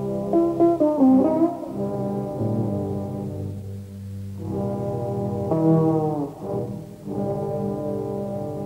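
Live jazz with a brass ensemble of trumpets, trombones, horns and tubas holding sustained chords over a low bass part, with a bass and soprano saxophone group. A melody line slides down in pitch about a second in and again near six seconds, between phrases that swell and ease off.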